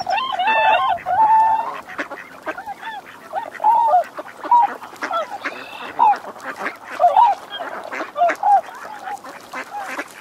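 Swans calling: a quick run of short honking calls, then single calls spaced about half a second to a second apart that thin out near the end.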